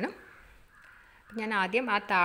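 A woman's voice talking, with a pause of about a second before it starts again.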